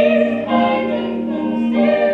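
Musical-theatre singing with accompaniment: long held sung notes over a steady low accompanying tone, the melody moving to a new note about half a second in.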